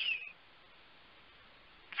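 A pause in speech: the tail of a spoken word fades out in the first moment, then near silence with only a faint steady hiss until the voice starts again at the very end.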